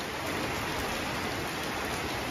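Heavy rain falling on a corrugated shed roof, a steady even hiss.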